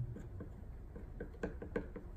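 A thin wooden stick ticking and tapping lightly against the inside of a small plastic cup while stirring pH indicator drops into a water sample. The ticks are faint and irregular, and come closer together from about a second in.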